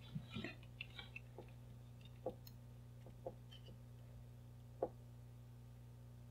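Faint, scattered clicks and taps of multimeter probe tips being placed and shifted on the pins of a small robot's circuit board, over a steady low hum.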